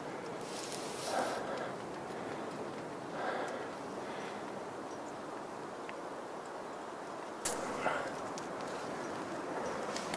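Steady wind hiss on the microphone high on an exposed rock face, with three heavy breaths from a climber close to the camera, and a short rustle of handling about seven and a half seconds in.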